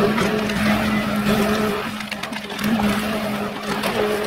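Ecolog 574E forwarder's engine and crane hydraulics running with a steady hum while the grapple works a load of brush. The hum dips for a moment about halfway through, amid a few short cracks and rustles.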